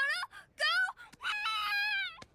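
A young girl's high-pitched wailing voice from a cartoon soundtrack: three drawn-out cries with swooping pitch, the last one held for nearly a second.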